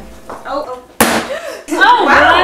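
A single sharp bang about a second in, with a short fading tail.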